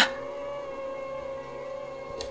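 Background music: a quiet, sustained synth drone of held tones with no beat, under a pause in the narration.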